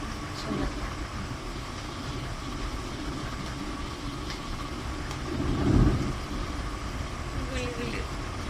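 Steady background noise with faint, distant voices, and a low rumble that swells and fades about five and a half seconds in.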